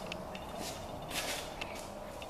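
Faint shuffling footsteps and handling noise on a shop floor, a few soft swishes and ticks over a steady low background hiss.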